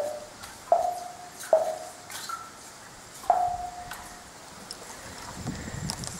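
Plumb bob on a fiberglass tape striking the water surface about 60 feet down a well, heard up the casing as sharp plinks, each with a short ringing tone that fades away, four of them in the first three and a half seconds. The plink is the sign that the bob has reached the water, marking the depth to the water level.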